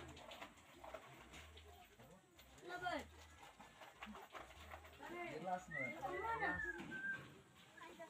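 Indistinct voices of people calling and talking in the background, in short stretches that come and go, busiest in the second half.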